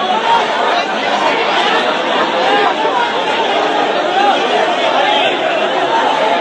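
A large crowd, many voices talking and calling out over one another in a continuous din.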